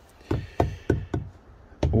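A fingertip tapping on the hard plastic deck of an Old Town Sportsman BigWater 132 PDL kayak: about four light knocks roughly a third of a second apart, then one sharper knock near the end.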